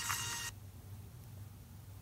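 Faint hiss that cuts off suddenly about half a second in, then near silence: room tone.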